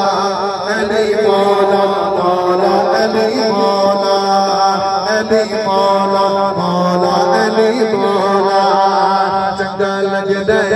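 A man singing a naat, an unaccompanied devotional song, through a public-address system: one long, ornamented melodic line with wavering pitch.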